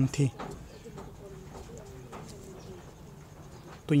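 Faint, low, wavering bird calls in the background during a pause in a man's speech, in about the first half of the pause.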